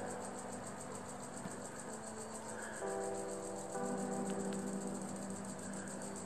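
Insects chirping in a rapid, even pulse. Low held notes come in about halfway through and thicken a second later.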